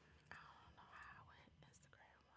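Near silence: quiet room tone with a faint whispered voice starting about a quarter second in.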